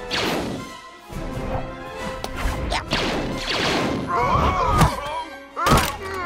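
Cartoon action soundtrack: background music with a run of sudden hits and crashes, then Ewok voices chattering near the end.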